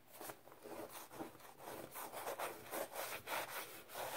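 Fingers digging into and crushing crumbly Ajax powdered cleanser, a run of gritty rubbing and crunching strokes at about three a second.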